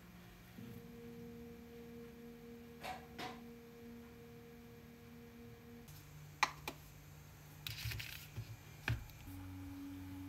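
Soft, sustained pure tones that change pitch twice, like slow background chords. A few light clicks and taps come through over them as a hand reaches behind an iMac to press its power button, the sharpest click about six and a half seconds in.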